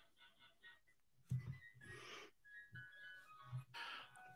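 Near silence, with faint, brief tones at changing pitches scattered through the second half.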